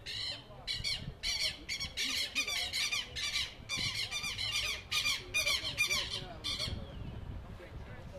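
A bird squawking in a rapid run of short, harsh, high-pitched calls that stops near the end.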